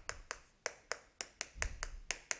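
Chalk clicking and tapping against a chalkboard while writing: a quick, irregular series of sharp clicks.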